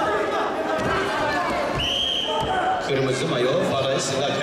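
Men's voices and chatter echoing in a large sports hall, with one short, high whistle blast about two seconds in, a wrestling referee's whistle stopping the action.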